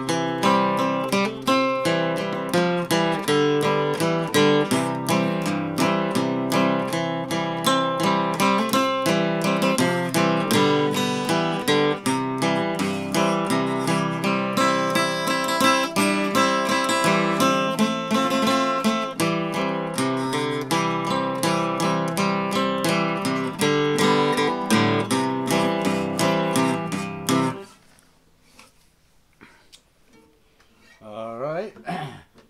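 A 1960s Harmony H165 all-mahogany acoustic guitar, strung with D'Addario custom light strings, playing a picked tune over a steady bass line. The playing stops about two seconds before the end, leaving only faint handling.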